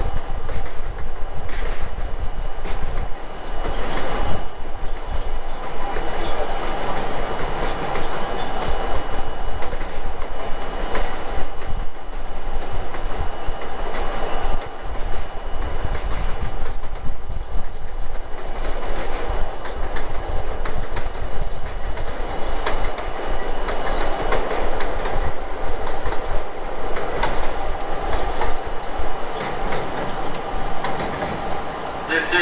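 An R32 subway train running along an elevated steel structure: a steady rumble of wheels on rail, with repeated clickety-clack clicks as the wheels cross rail joints and a faint steady high whine above it.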